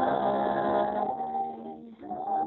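Three voices singing together in close family harmony, holding a sustained chord that shifts about a second in and dips briefly near the end, heard through a live video-call connection with thin, narrow audio.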